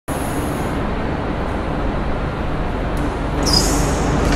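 Steady low rumble of a vehicle running, with a bright swish near the end.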